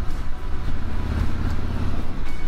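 Harley-Davidson Electra Glide Standard's V-twin engine running steadily as the bike rides along, with wind and road noise, heard from the rider's seat.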